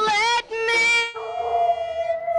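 Young girl singing into a microphone, climbing to a high, wavering note that comes across like a dog's howl. About a second in her voice drops away and a steadier held note carries on.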